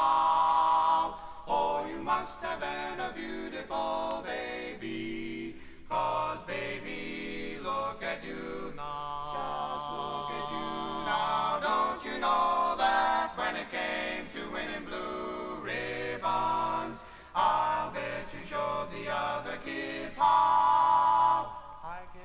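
Male barbershop quartet singing a cappella in close four-part harmony, moving through a series of held chords.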